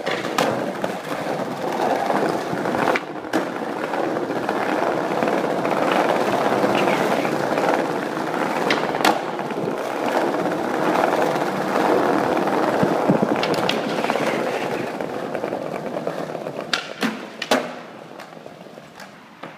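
Skateboard wheels rolling steadily over smooth pavement, broken by several sharp clacks of the board striking the ground, the loudest about halfway and just before the end.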